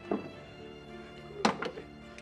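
Sustained dramatic background music with two thumps of a body being shoved against a wall, a short one at the start and a louder one about a second and a half in.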